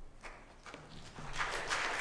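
A few footsteps on the platform floor, then a congregation starts applauding about one and a half seconds in.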